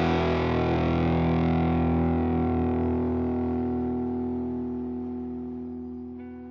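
A final chord on a distorted electric guitar, struck just before and left ringing, slowly fading out with no new notes.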